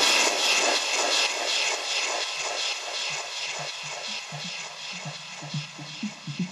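Breakdown in a melodic house/techno DJ mix: the kick drum drops out, leaving an airy wash of synth noise with a soft pulsing rhythm that fades down.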